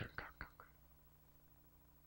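Near silence: room tone with a faint steady hum, after the last soft syllables of a man's speech trail off in the first half-second.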